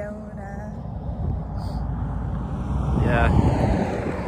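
A vehicle passing on a road. Its rumble swells to a peak about three seconds in and then starts to fade.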